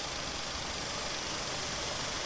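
Steady background hiss with no distinct events: the recording's constant noise floor.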